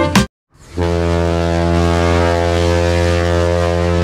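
A cruise ship's horn sounding one long, steady, deep blast, starting just under a second in, after a burst of music cuts off.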